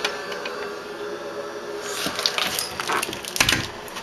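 Handling noise from a handheld camera being swung around: rustling and scattered clicks from about two seconds in, with one louder thump near the end, over a faint steady hum.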